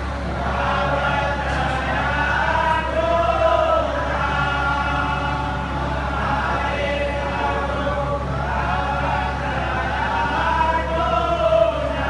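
A group of voices singing a devotional aarti hymn together in long melodic phrases, one phrase returning about every eight seconds, over a steady low hum.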